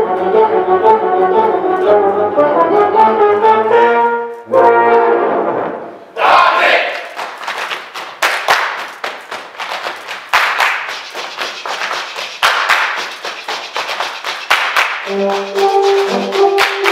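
Tuba and euphonium ensemble playing low brass chords that end on a held chord about four and a half seconds in. From about six seconds there is a long stretch of dense crackling noise with no brass tones, and sustained brass notes return near the end.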